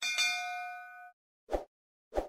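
Notification-bell sound effect: one bright bell ding with several ringing tones that fade and cut off about a second in, then a short thump near the end.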